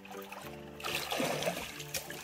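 Background music with held notes, and near the end a thrown stone plops into the lake without skipping.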